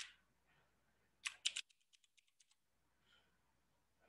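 Computer keyboard typing: a quick run of key clicks about a second in, followed by a few fainter ones.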